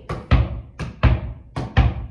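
Basketball being dribbled on thin carpet: three bounces about two-thirds of a second apart, each a low thud, with lighter taps in between.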